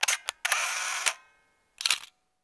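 Camera shutter sound effect: sharp clicks at the start, a short whirring noise lasting about half a second, then another quick double click near the end.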